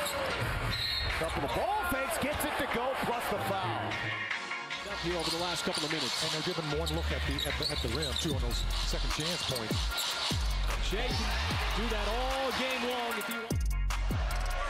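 NBA game audio: a basketball dribbled on a hardwood court, with voices and arena crowd noise, under a backing music track with a steady low bass that comes in about halfway through. The sound drops out briefly twice where the footage cuts to another game.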